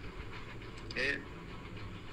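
A pause in the speech with a low, steady background rumble, broken about a second in by one short, faint vocal sound.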